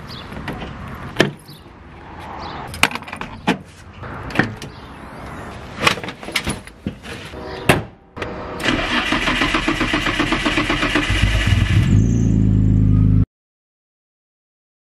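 Sharp clicks and knocks from a car's door and key, then a Nissan Skyline GT-R's twin-turbo straight-six running, steady and growing louder. A deep rumble comes in near the end, and the sound cuts off suddenly.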